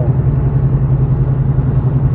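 Steady low drone of road, tyre and engine noise inside a Nissan Xterra's cabin cruising at about 100 km/h on a highway.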